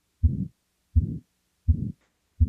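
Recorded heartbeat with a murmur: three low beats, each a short smeared pulse, about 0.7 seconds apart. It is the kind of abnormal heart sound made by a diseased valve such as in aortic stenosis.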